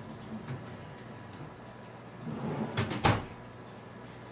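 Microwave oven door handled: a few light clicks, some rattling, then a single sharp clack of the door shutting about three seconds in.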